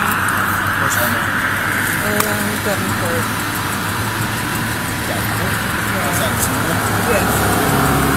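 Roadside traffic and a car engine idling, with a steady low hum and a passing vehicle's road noise fading over the first couple of seconds. Faint, muffled voices come through now and then.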